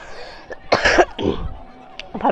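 A person coughing: one short cough about a second in, followed by a weaker one.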